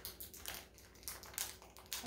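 Faint crinkling and irregular clicking of a small package being handled while someone tries to get it open.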